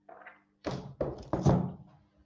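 Several dull thumps and knocks of things being handled close to the microphone: a light one at the start, then three quick heavier ones, the last about a second and a half in the loudest.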